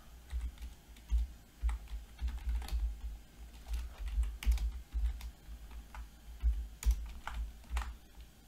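Typing on a computer keyboard: an uneven run of keystroke clicks, each with a dull low thud.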